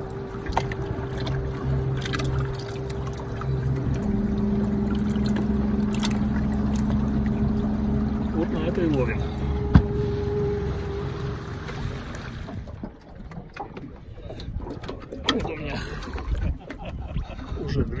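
A motor running steadily, its pitch stepping up about four seconds in, then cutting out about twelve and a half seconds in, with a sharp click just before ten seconds. After that, scattered knocks and handling sounds.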